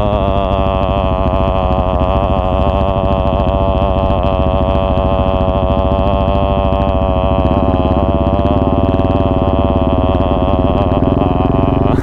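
2017 KTM 690 Duke's single-cylinder engine running at a steady cruise through its Akrapovic exhaust, a loud, even drone whose pitch wavers slightly with small throttle changes.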